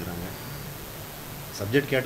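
A short pause in a man's speech filled with steady room hiss; he starts talking again near the end.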